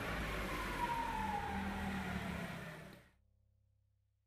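Forklift running as it drives, a steady mechanical noise with a whine that slides down in pitch; the sound fades and cuts off about three seconds in.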